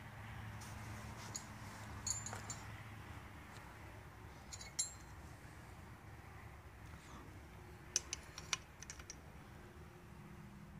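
A few light metallic clicks and clinks from a combination wrench being handled, with a quick run of clicks near the end, over a faint steady low hum.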